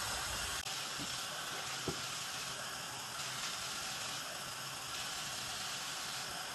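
Water running steadily from a tap into a utility tub, a smooth, unbroken hiss, with a small click shortly after the start.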